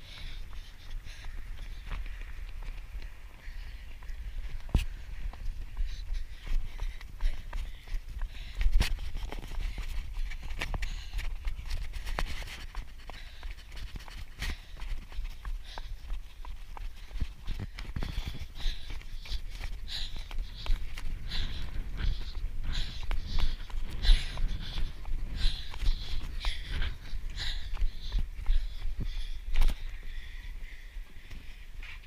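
Running footsteps on pavement picked up by a camera carried by the runner, with irregular knocks from each stride jolting it over a low rumble.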